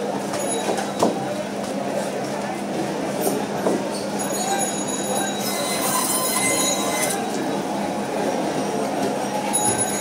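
Electric band saw (bone saw) running with a steady hum while pieces of silver carp are pushed through the blade, with a few sharp knocks from fish pieces on the steel table. A harsher, higher rasp rises midway as the blade cuts through a piece.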